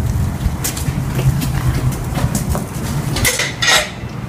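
A bicycle being handled: scattered light metallic clicks and rattles over a steady low rumble, with a louder clatter near the end.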